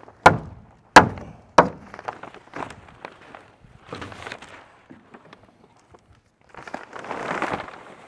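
Three sharp thuds in the first two seconds, then a few lighter knocks, and near the end a longer crinkling rustle of plastic sheeting being pulled up off the floor.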